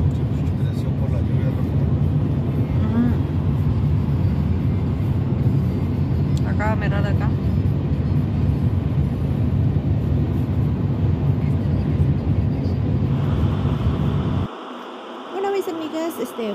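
Steady road and engine noise heard inside a car at highway speed, a low rumble that cuts off suddenly near the end.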